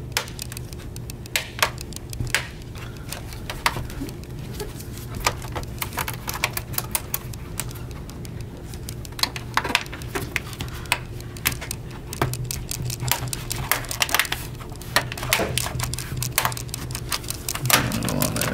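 Plastic bottom panel of a laptop being pried off with a plastic pick, its retaining clips snapping loose in a string of irregular sharp clicks, thicker in the last third.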